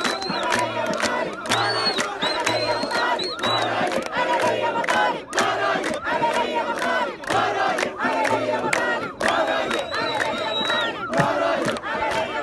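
A large crowd of protesters chanting and shouting together with hand claps. Long, high whistle blasts sound near the start, again after about two seconds, and once more near the end.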